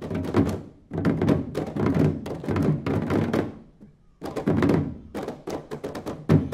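An ensemble of Balinese kendang drums played together in fast, dense strokes. The strokes come in phrases of a second or two, broken by short pauses. Near the end they thin out into separate, spaced hits.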